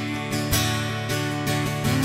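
Acoustic guitar strummed in a steady rhythm, with a strum stroke about every half second over ringing chords.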